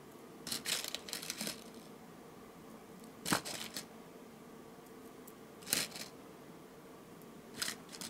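Beads clicking against a clear plastic tray and against each other as they are picked out and strung onto a needle: a quick patter of small clicks and rustling near the start, then three sharper single clicks about two seconds apart.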